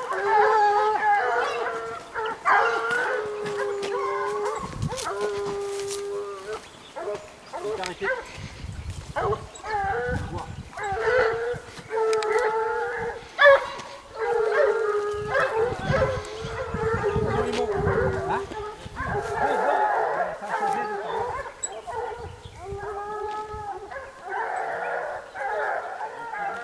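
Young hunting hounds baying on the track of a wild boar: repeated drawn-out howling calls from several dogs, now and then overlapping, broken by short pauses.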